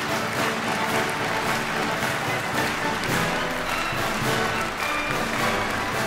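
Orchestral music playing, with audience applause mixed in.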